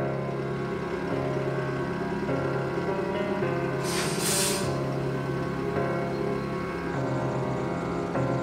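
Music playing over a stationary ČD class 810 diesel railbus running at idle, with a short double hiss of released air about four seconds in.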